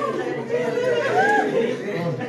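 Several people talking at once: a chatter of overlapping voices.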